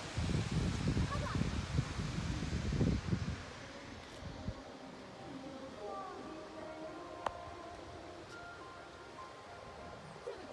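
Low, gusting rumble of wind on the phone's microphone for about the first three and a half seconds, then faint distant voices.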